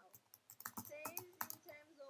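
Faint computer keyboard typing, a few irregular clicks, with a faint voice in the background.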